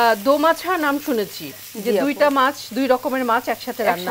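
Chopped onions frying in mustard oil in a pan, sizzling as a spatula stirs them, under women talking.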